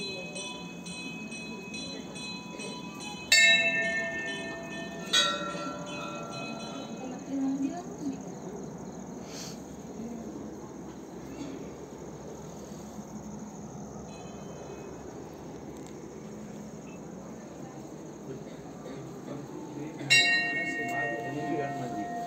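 Hanging temple bells struck three times: about three seconds in, again two seconds later, and near the end. Each strike rings with several clear tones that fade over a couple of seconds, over a low murmur of people.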